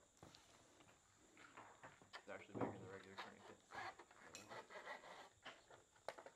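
Near silence with faint voices murmuring in the background.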